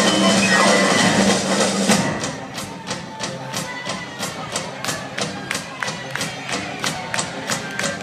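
Live band with piano, double bass and drums playing a full passage. About two seconds in the band drops out, leaving a sparse, steady beat of sharp taps, about three or four a second.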